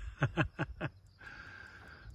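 A man chuckling quietly: a few short, breathy laughs in the first second, then a faint steady high-pitched tone in the background.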